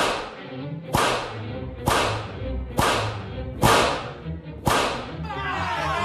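Whip cracks, added as sound effects: six sharp cracks about a second apart, each with a short ringing tail. Low background music runs underneath, and crowd hubbub comes in near the end.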